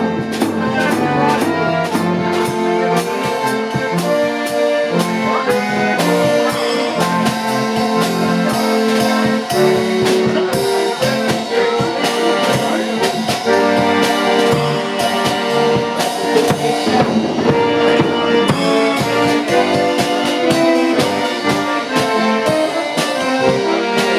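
Button concertina playing a slow melody in sustained reedy chords, with a drum kit keeping time on drums and cymbals.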